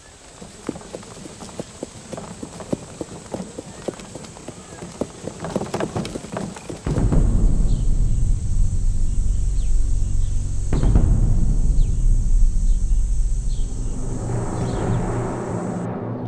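Horse hooves clip-clopping on stone paving as a horse-drawn carriage moves off, a quick run of hoofbeats over the first seven seconds. About seven seconds in, loud music with a deep bass comes in suddenly and is the loudest sound from then on.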